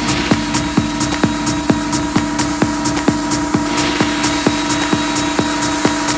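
Minimal techno: a steady four-on-the-floor kick drum at about two beats a second under a held synth tone, with a hissing noise build-up rising in from a little past halfway.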